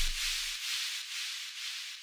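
Tech house track's outro: the bass and kick drop out at the start, leaving a high, hissing percussion pattern of about four hits a second that fades away.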